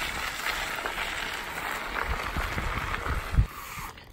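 Bicycle tyres rolling over a dirt trail, a steady gritty hiss, with wind rumbling on the microphone. A single sharp knock about three and a half seconds in.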